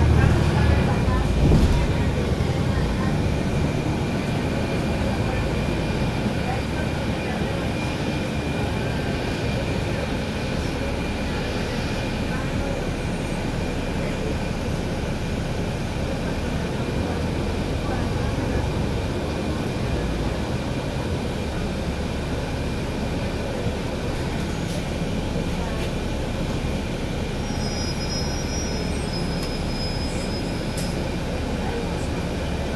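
Inside a moving NABI 416.15 diesel transit bus: steady engine and road noise fill the cabin, heavier in the first couple of seconds, with a thin steady high whine running through it.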